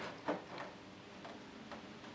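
Faint, scattered light clicks and taps of a small Perspex plastic piece being pressed into place in a model boat's hull by hand, about four in two seconds at uneven spacing.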